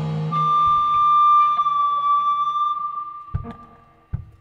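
The full band cuts off and an electric guitar rings on with one sustained high note that slowly fades away. A couple of sharp knocks follow near the end.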